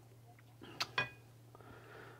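Thick parsley sauce coming back to the bubble in a frying pan: two short pops about a second in, the second with a brief ring, over a faint steady hum.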